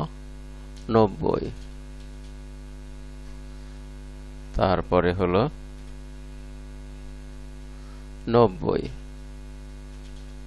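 Steady electrical mains hum on the recording, a constant buzz with many evenly spaced overtones. Three short bursts of a man's voice speaking Bengali number words sit over it and are louder than the hum.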